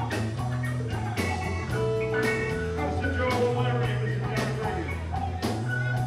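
Live band playing a blues-rock number: electric guitar and bass over a drum kit, with steady drum hits and a sustained bass line.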